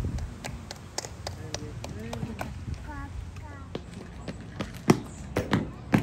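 Voices of people talking in the background, over a steady run of light taps and clicks, two or three a second, with a few louder knocks near the end.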